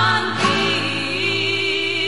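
Recorded Navarrese jota sung by women with instrumental accompaniment; about half a second in the voices settle into long held notes.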